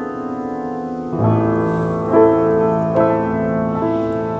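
1966 Baldwin SF10 seven-foot concert grand piano played in slow, sustained chords. A fuller chord with deep bass comes in about a second in, followed by a few more chord changes.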